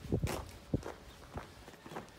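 Footsteps on a gravel lane: about four irregular steps, roughly half a second apart.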